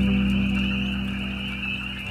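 Ambient synthesizer music: a sustained chord, played on Roland's "Soundtrack" patch, slowly fades, with faint repeated rising frog calls from a spring field recording high above it.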